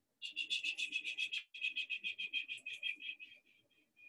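Palms rubbed briskly together, a fast, even swishing of about ten strokes a second, with a short break about one and a half seconds in and fading out near the end.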